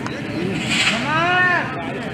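A person's voice calling out in one long drawn-out cry, its pitch rising and then falling, starting about half a second in and lasting about a second, over steady open-air background noise.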